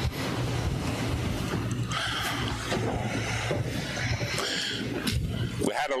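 Rustling, rumbling noise with a low hum, as of clothing rubbing on a body-worn microphone while a man walks and sits down on a stool; it cuts off sharply just before he speaks.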